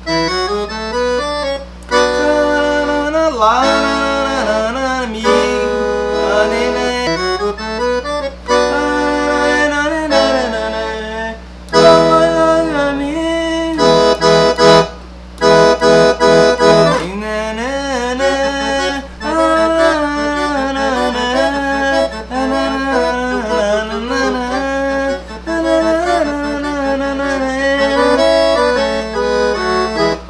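Roland V-Accordion, a digital accordion, playing a forró solo melody with chords on its right-hand piano keyboard, moving into B minor. About halfway through it plays a run of short, detached chords.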